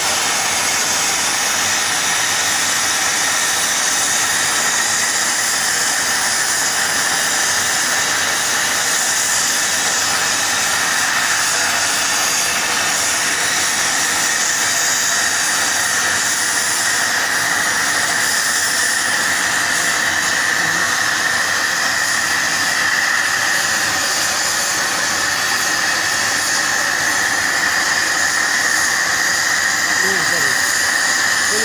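Plasma torch of an Apmekanic SP1530 CNC cutting machine cutting through steel plate: a loud, steady hiss of the arc with a high whistle running through it that grows a little stronger in the second half.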